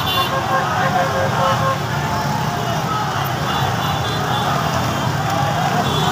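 Many motorcycle engines running at low speed in slow traffic, under the many voices of a large crowd on the street.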